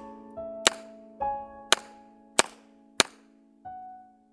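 Four pistol shots, spaced about half a second to a second apart: the last shots of an IPSC stage. Background music with sustained notes plays under them.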